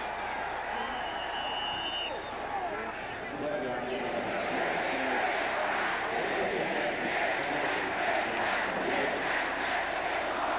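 Stadium crowd noise: a steady din of many voices that grows a little louder about four seconds in. A brief high whistle sounds about a second in.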